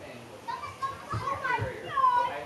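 Children's high voices calling out and shouting, starting about half a second in and getting louder near the end.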